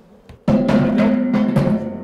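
Titanium wind harp with a metal cone resonator knocked and jostled by hand. Several sharp strikes starting about half a second in set its strings and body ringing in steady tones, which fade near the end.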